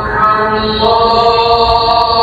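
Muezzin chanting the Maghrib adhan (Islamic call to prayer) over the Masjid al-Haram's loudspeakers, a loud solo male voice drawing out long held notes that shift pitch about half a second in.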